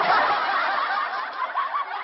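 Several people laughing and chuckling together, a canned laughter sound effect with a dull, lo-fi tone that plays through the pause and stops shortly after.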